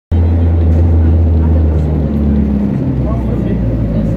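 Engine and road noise heard from inside a moving vehicle: a loud, low drone whose pitch shifts in steps as the engine changes speed.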